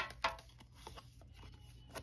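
Trading cards being handled: a sharp click at the start, then faint light taps and rustles of card stock over a low steady hum.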